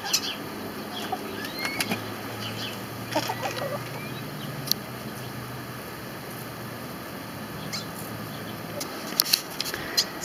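Backyard hens giving a few faint, short calls over a quiet background, with scattered small clicks and rustles that come thicker near the end.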